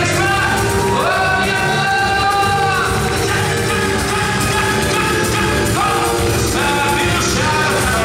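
Live band playing Brazilian samba-style music on drum kit, electric bass and a small four-string guitar, with a voice sliding up into a long held sung note about a second in and shorter sung phrases near the end.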